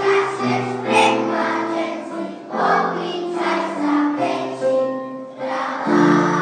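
A children's song sung by a choir of young voices over instrumental accompaniment, the melody moving in held notes.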